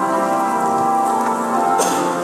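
Church keyboard music playing sustained, held chords, with a brief rustling noise near the end.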